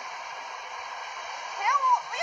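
Steady, even rushing noise of an NS passenger train moving along the platform as it pulls out. A man's voice starts near the end.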